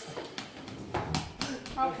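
A spoon knocking and scraping against a white ceramic serving bowl and plate as food is scooped out: several short, sharp knocks, with a voice near the end.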